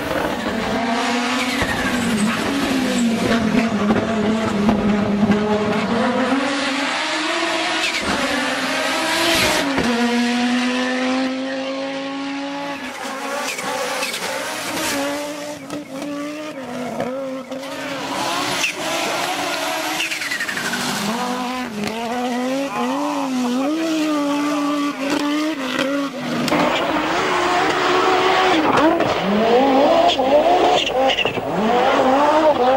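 Group B rally car engines revving hard on gravel special stages, the pitch climbing and dropping through gear changes and lifts, with tyre and gravel noise. The sound breaks off several times as different passes are cut together.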